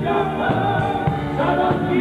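Live band playing a song: a man singing, with electric guitar, keyboard and drums.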